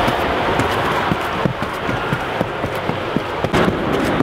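Footsteps knocking on wooden stair treads, irregular, over a loud steady rushing noise outdoors.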